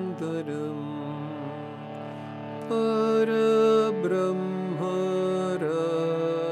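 Harmonium playing a devotional melody over held reed chords, with a man's singing voice joining about three seconds in, sliding between notes.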